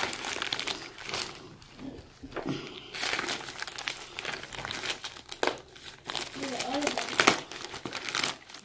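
Thin plastic poly mailer bag crinkling and rustling in irregular bursts as hands pull and tug it open.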